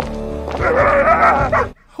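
A dog giving one drawn-out, wavering howl over a low music bed from a film soundtrack; the howl starts about half a second in and breaks off shortly before the end.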